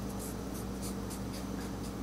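Cotton swab rubbing and dabbing acetone into paper wrapped over a stone seal, making faint, irregular soft scratches, over a steady low hum.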